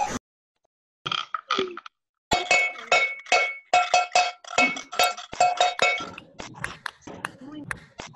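A small object with a bright ringing tone struck over and over at an even pace, about four strikes a second, each with the same pitch. It starts about two seconds in and stops after roughly four seconds; fainter, scattered sounds follow.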